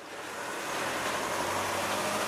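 Small refuse collection truck approaching along a road. Its engine and tyres make a steady rushing noise that swells in over the first second and then holds.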